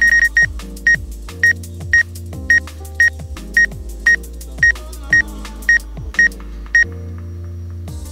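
DJI GO app obstacle-warning beeps for a DJI Mavic Pro: a short high beep about twice a second, stopping near the end. They signal that the drone's forward vision sensors detect an obstacle about three metres ahead. Electronic background music with a steady kick drum and bass plays underneath.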